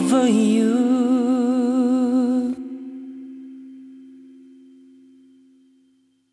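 The song's ending: a final sung note held with vibrato over guitar, cut off about two and a half seconds in. The last guitar chord is left ringing and dies away to silence.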